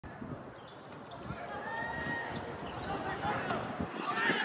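Volleyballs bouncing and thudding on a gymnasium's wooden floor in irregular knocks, over the chatter of many voices in the hall.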